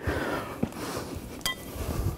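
A man getting up off a sports-hall floor: clothing rustling and shuffling footsteps with low thuds, and one brief sharp sound about one and a half seconds in.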